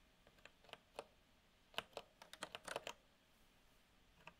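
Faint computer keyboard keystrokes: a few scattered taps, then a quick run of typing about two seconds in.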